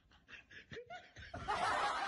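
Quiet snickering that breaks into loud laughter about a second and a half in.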